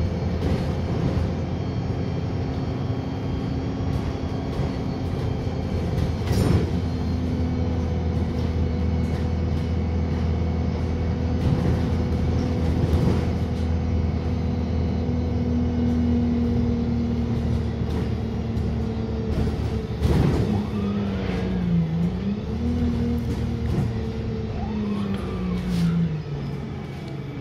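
Cabin sound of a Wright StreetLite WF single-deck diesel bus under way: a steady low engine drone with a whine that holds its pitch, then dips and rises again in the last few seconds as the bus changes speed. A few sharp knocks and rattles sound from the body, one about six seconds in and one about twenty seconds in.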